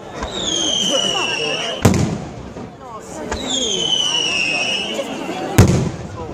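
Aerial fireworks: two high whistles, each falling slowly in pitch for about a second and a half, each followed by a sharp bang as a shell bursts. The bangs are the loudest sounds, one about two seconds in and one near the end.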